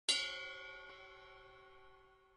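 A single notification-bell ding sound effect from a subscribe-and-bell animation: one bright metallic strike that rings out and fades over about two and a half seconds.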